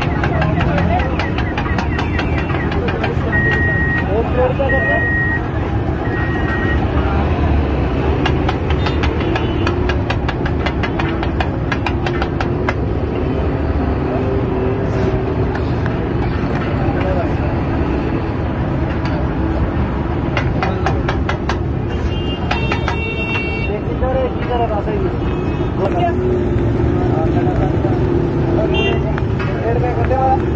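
Metal spatula clattering rapidly on a flat iron griddle as minced mutton and brain (keema guttala) is chopped and mixed, the clatter thinning out about halfway through, over street traffic and voices. Three short high beeps come about four seconds in.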